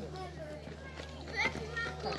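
Children's voices at play outdoors: short high-pitched child calls and speech, loudest about one and a half seconds in, over a steady low hum.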